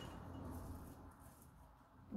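Near silence: faint room tone with a low hum, fading quieter toward the end.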